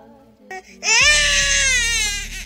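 A baby crying: one long wail starting about a second in.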